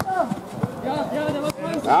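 Men's voices calling out on a football pitch during play, ending in a rising shout of "Ja".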